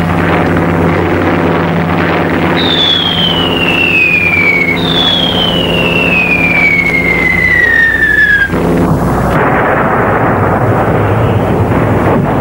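Wartime battle sound effects: two long whistles, each falling steadily in pitch over two to four seconds, over a steady droning tone. The drone stops about eight and a half seconds in, and a rough, noisy rumble carries on.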